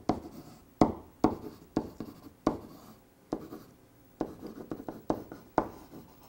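Marker writing on a whiteboard: a string of short, sharp strokes and taps about half a second apart, thinning out for about a second past the middle.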